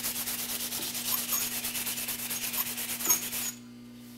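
Sandpaper rubbing by hand along the grain of a wooden spoon's turned handle in quick back-and-forth strokes, to take out the sanding marks left from sanding with the lathe spinning. It stops about three and a half seconds in, with a faint steady hum underneath.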